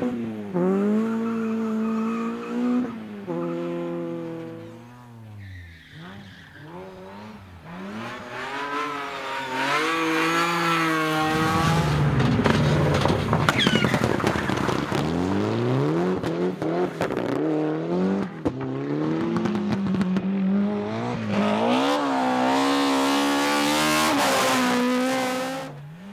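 Rally cars going by one after another, each engine revving hard and changing up through the gears, its pitch repeatedly climbing and dropping. First a Peugeot 106 slides through on loose dust. Around the middle a rougher, noisier passage comes as a Mitsubishi Lancer Evolution goes by.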